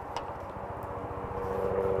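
A motor or engine running steadily in the background, a low drone with a fast, even pulse, with a faint click or two on top.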